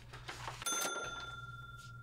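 A single bright bell-like ding about two-thirds of a second in, ringing on and slowly fading.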